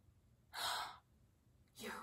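A woman's short, breathy audible breath lasting about half a second, near the middle, followed by the start of a spoken word at the end.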